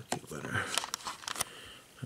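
A handful of quick, sharp clicks from computer keys as a web page is scrolled, with a faint breath or murmur between them.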